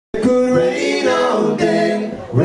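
Several male voices singing a held, sustained line in close harmony, with the live band's instruments low beneath the voices. The sound cuts in abruptly about a tenth of a second in.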